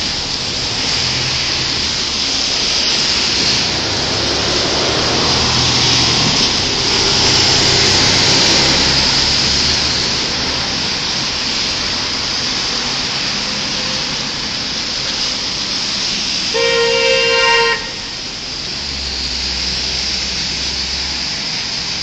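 Steady noise of road traffic passing, with one car horn honk lasting about a second near the end.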